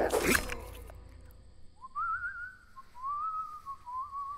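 A loud crash in the first half-second, then quiet. From a little before halfway a thin whistle starts, wavering up and down in pitch.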